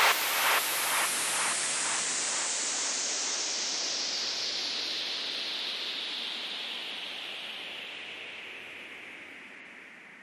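Synthesized white-noise sweep in the outro of an electronic house track. It darkens steadily as a filter closes downward and fades out, and in the first two seconds a hit echoes away in repeats about half a second apart.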